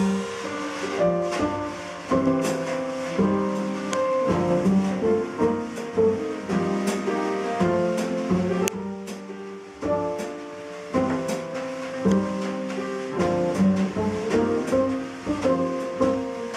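Jazz piano trio playing: upright acoustic piano, pizzicato double bass and drum kit with cymbal strokes.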